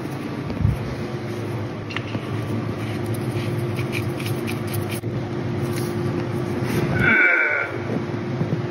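Steady hum of a workshop space heater running, with a few light clicks as the drain plug is threaded back into the BMW E30's rear differential by hand. Near the end, a short high-pitched squeal stands out briefly.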